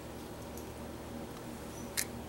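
Faint, soft handling sounds of fingers prying the seed and its papery seed coat out of a ripe avocado half, over a steady low hum, with one sharp click near the end.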